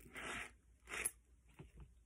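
A UST mini machete being drawn from its sheath: two short scraping rustles, the second about a second in, followed by a couple of faint clicks.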